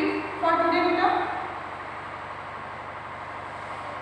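A woman speaking for about the first second and a half, then only a steady background hiss.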